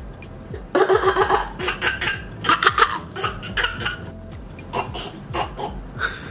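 Laughter in a run of short, uneven bursts, starting about a second in.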